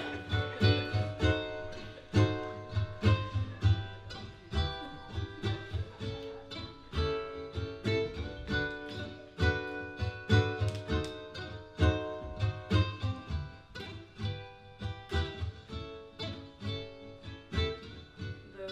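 Ukulele strummed in a steady rhythm, repeated chords ringing, with no singing.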